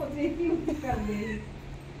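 Short, high-pitched vocal sounds from people in the first second and a half, then only a steady low hum.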